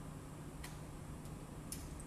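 Three faint, sharp clicks over a steady low hum, the first about half a second in and the last near the end.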